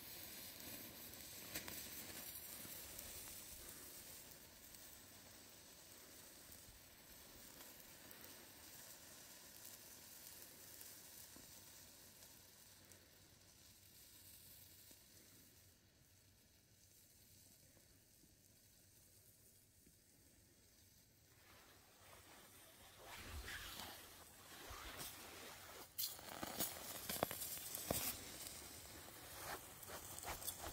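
Faint sizzling hiss of a burning saltpeter and sugar mixture, fading down around the middle. In the last several seconds a run of sharp clicks and crackles comes in.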